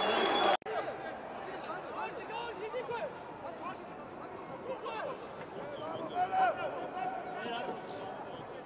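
A louder sound stops abruptly about half a second in. Then comes quieter football-pitch ambience of players' short shouts and calls, with one longer held call about six seconds in.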